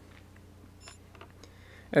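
Quiet background hum with a few faint, short clicks between stretches of narration.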